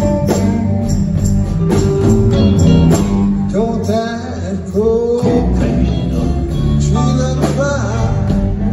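Live rock band playing: electric guitars, keyboards and drums, with gliding melodic lines in the middle and again near the end, heard from the audience in a concert hall.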